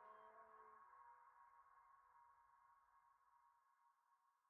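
Near silence: the last faint held tones of an electronic music piece slowly dying away, with a few higher notes stopping about a second in.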